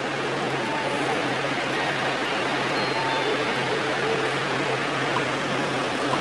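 A steady rushing hiss with a faint low hum under it, holding level throughout.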